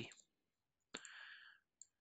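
Near silence with a faint click about a second in, followed by a brief soft sound, and another faint click near the end.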